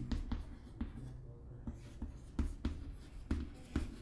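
Chalk writing on a chalkboard: an irregular run of taps and short scratchy strokes as words are written.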